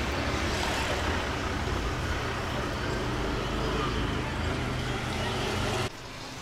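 Steady road-traffic noise with a low engine rumble underneath, cutting off suddenly near the end.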